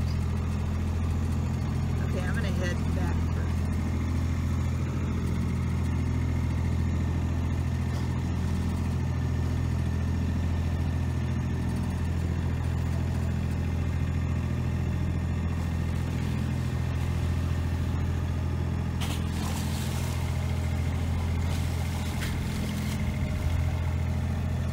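Boat engine running steadily, a deep even drone, as the boat motors slowly over the water. A brief rush of hiss comes in a few seconds before the end.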